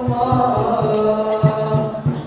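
A young man's solo voice chanting a nasyid phrase into a microphone, holding one long note that wavers in pitch and then moves down to a lower note about halfway through.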